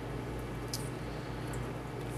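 Steady hum and bubbling water noise of a running reef aquarium's pumps and filtration, with one faint tick about three quarters of a second in.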